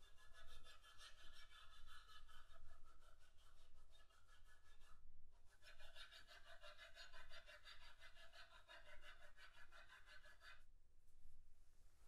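A toothbrush scrubbed rapidly back and forth over a sheet of paper on a table, a faint, even brushing of many strokes a second. It breaks off briefly about five seconds in, resumes, and stops about a second before the end.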